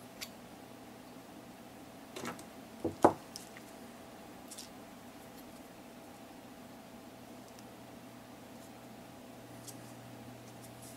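Light handling on a wooden workbench: a small click, then a few knocks about two to three seconds in, the loudest a single sharp knock as a metal-collet pin vise is set down on the table, followed by a couple of faint ticks. A faint steady hum runs underneath.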